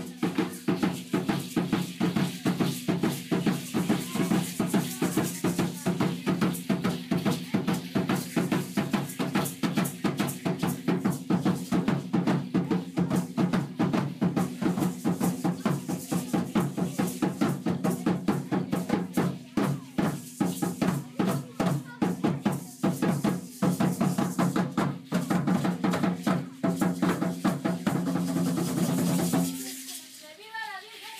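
Aztec dance drumming: a tall upright huehuetl drum beaten in a fast, steady rhythm, with the dancers' ankle rattles shaking along. The drumming stops abruptly just before the end.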